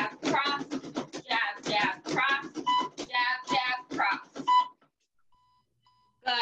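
Background music with a singing voice. Partway through, a round timer gives a run of short high beeps over about two seconds, marking the end of a 30-second boxing round. All sound cuts off about five seconds in, leaving near silence.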